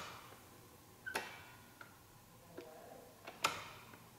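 Faint scattered clicks and taps, about five in four seconds, the loudest about three and a half seconds in, from the rear brake pedal and the caliper's bleeder screw being worked while the rear brake reservoir is pumped empty.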